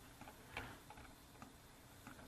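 Near silence with a few faint clicks of a computer mouse, the clearest about half a second in.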